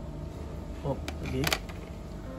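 A brief spoken remark over a faint steady hum, with a sharp click near the end of the remark.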